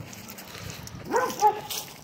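A dog barking twice in quick succession, a little over a second in; the barks are short and fairly high-pitched.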